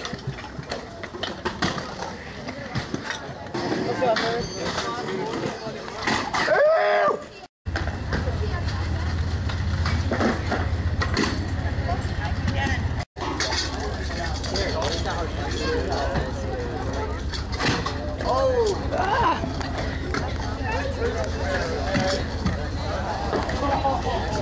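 Stunt scooters rolling and clacking on concrete, with sharp knocks from tricks and landings, over background chatter from onlookers. The sound drops out briefly twice, about a third of the way in and about halfway through.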